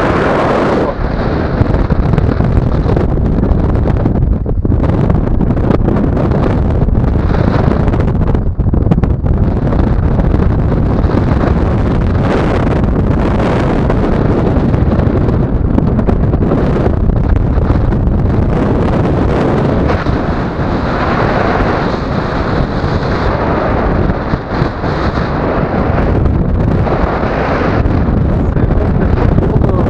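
Rushing airflow buffeting the camera microphone of a tandem paraglider in flight, loud and continuous, swelling and easing every few seconds.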